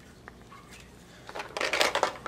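Quiet room tone, then from about a second and a half in a brief rustle of handling noise as the gloved hands pull back from the dissection pan.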